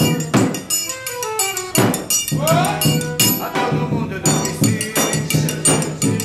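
Forró pé-de-serra trio playing: piano accordion carrying the melody over a steady beat of zabumba bass-drum strikes and a ringing metal triangle.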